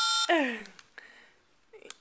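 Electronic baby toy cell phone sounding a short steady electronic tone that cuts off abruptly, followed by a brief voice sound falling in pitch, then quiet.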